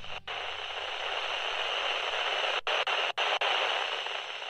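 Radio static: a steady hiss, as of a transmission cut off, broken by a few brief dropouts between about two and a half and three and a half seconds in.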